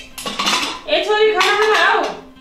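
Aluminium cookware clattering as a pressure cooker and pots are handled on a stove, with a sharp metal clink near the start, over a background song with a singing voice.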